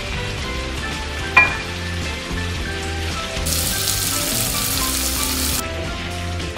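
Floured chicken pieces sizzling as they brown in melted butter in a frying pan, the sizzle turning louder and hissier for about two seconds in the second half, then dropping back abruptly. A single sharp click comes about a second and a half in.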